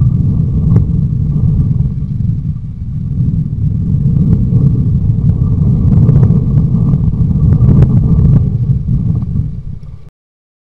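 Wind buffeting a trail camera's built-in microphone: a loud, rough low rumble that swells and eases, with a few faint clicks over it.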